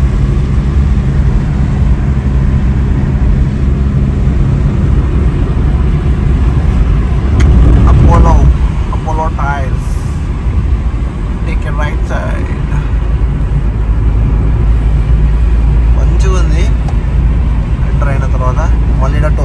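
Car cabin noise while driving: a steady low rumble of engine and tyres on the road, swelling briefly a little before halfway. Faint voices come through in the second half.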